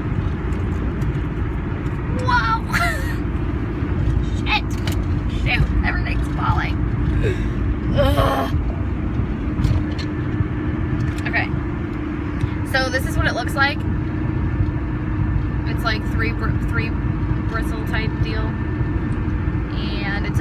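Car cabin noise while driving: a steady low road rumble with a faint engine hum, with short scattered sounds over it.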